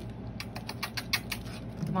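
Chihuahua puppy's claws pattering on a hard floor as it scampers with a toy: a quick, irregular run of about ten light clicks over a second.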